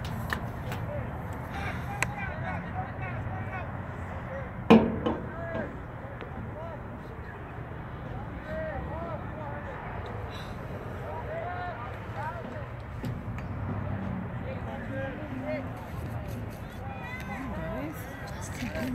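Distant shouts and calls of lacrosse players and coaches across the field over a steady low outdoor rumble, with one sharp knock a little under five seconds in.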